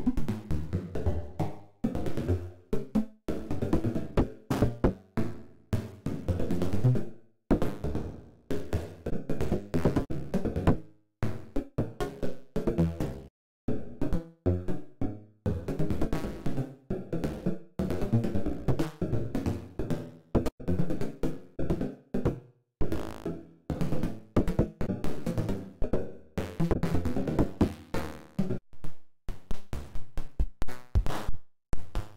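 Electronic percussion from a Max/MSP patch: an irregular stream of sharp knock-like hits, each ringing briefly as noise impulses excite a bank of comb filters, broken by a few short gaps.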